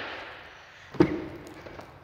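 A single sharp clunk about a second in as the truck's manually folding telescopic tow mirror is pushed against its stop, ringing briefly. The start holds the fading tail of an earlier clunk.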